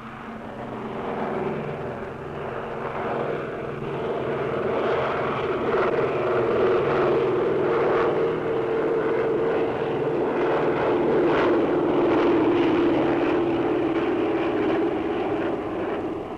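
Propeller aircraft engines droning overhead, a steady tone that swells over the first few seconds and slowly sinks in pitch.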